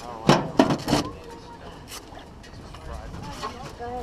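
Racing seat harness being fastened: three sharp metallic clicks within the first second as the latch and straps are worked, then quieter handling.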